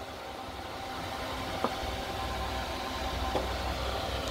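Steady low rumbling hum with a hiss of background noise, like machinery or traffic, growing slightly louder, with a faint click about one and a half seconds in.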